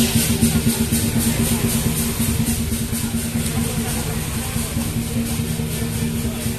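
Lion dance procession percussion: drum and cymbals beating a steady rhythm of about four strokes a second, fading slightly, over a steady low engine hum.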